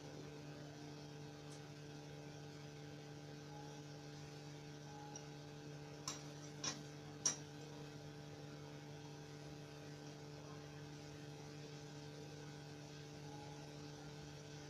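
A steady low electrical hum with several evenly spaced overtones, and three faint short clicks a little past the middle.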